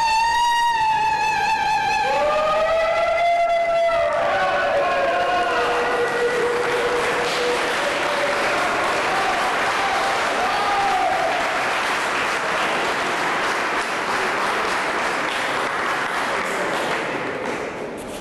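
A soprano sings long operatic notes with a wide vibrato, the last phrase falling and ending about six or seven seconds in. Audience applause rises under the final note and carries on, fading just before the end.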